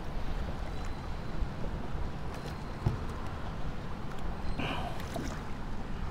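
Water sloshing against a kayak hull, with a steady low rumble of wind on the microphone. There is one faint knock about three seconds in and a short hiss near the end.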